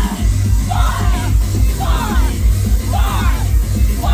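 Loud live music through a PA, heavy in the bass, with a shouted call about once a second in time with the beat.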